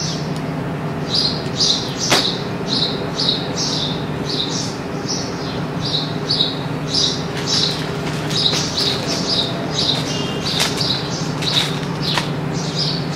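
A small bird chirping over and over, short high chirps about two to three a second in runs, over a steady low hum.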